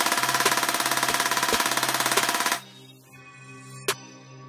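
Toy Steyr AUG bullpup rifle firing a fast full-auto burst, a loud rapid rattle that cuts off abruptly about two and a half seconds in. Background music carries on beneath it and after it.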